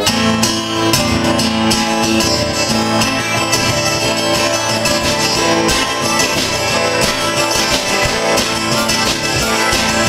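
A live folk-rock band comes in together at the start with an instrumental passage: strummed acoustic guitar over bass, with harmonica at the microphone.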